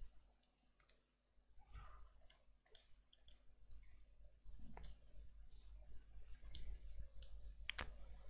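Faint, scattered clicks of a computer mouse, a few irregular ticks with the sharpest pair near the end.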